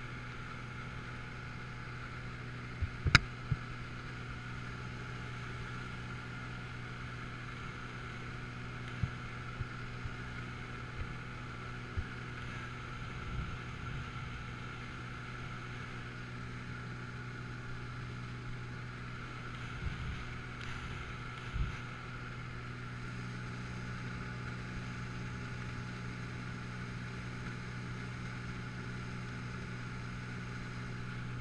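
Light aircraft's engine and propeller droning steadily inside the cabin during the climb, with a few short knocks, the loudest about three seconds in.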